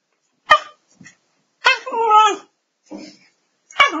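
Small dog vocalizing in a human-like 'talking' way: a short sharp call about half a second in, a longer call that bends down and up in pitch in the middle, and another sharp call near the end.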